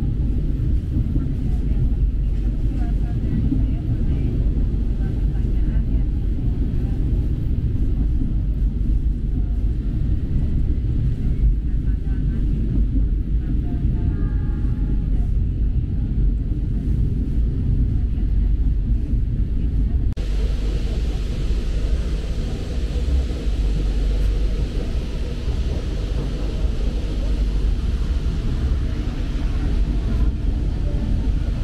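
Steady low rumble of a passenger train running along the track, heard from inside the carriage. About twenty seconds in, a brighter hiss joins the rumble.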